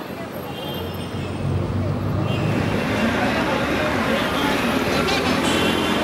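City street ambience: steady road traffic with voices in the background, growing louder about two seconds in.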